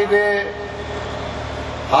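A man's voice over a microphone ends a phrase, then pauses for over a second, leaving a steady background rumble with a low hum, and starts again at the very end.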